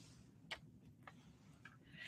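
Near silence: room tone, with one faint short click about half a second in and a couple of fainter ticks after it.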